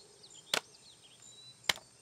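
Two short, sharp clicks a little over a second apart, over faint chirping in the background.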